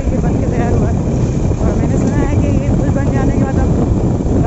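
Wind rushing over the microphone of a TVS Apache motorcycle riding at speed, with engine and road noise beneath. It stays steady and loud throughout.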